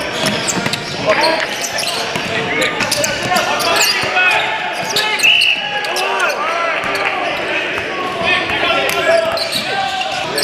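Basketball game sounds in an echoing gym: a basketball bouncing and hitting on a hardwood court, sneakers squeaking, and players and spectators calling out and talking throughout.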